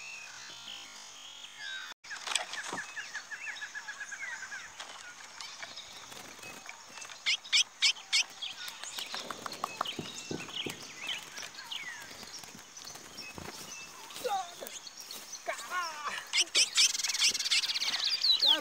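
Chestnut-bellied seed finches (curiós) singing in phrases of whistled, sweeping notes, with a few sharp clicks from birds at the trap cage about seven seconds in.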